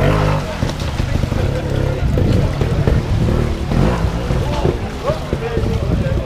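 Trials motorcycle engine running at low revs as the bike is ridden over boulders in a stream, its note strongest at the very start, over the steady rush of the stream.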